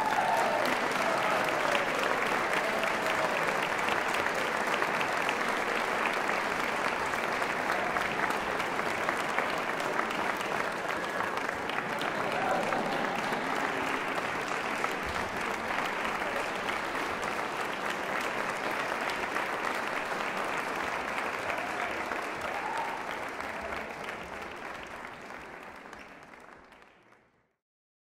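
Concert audience applauding steadily after a marimba ensemble performance, with a few cheers from the crowd. The applause fades out near the end.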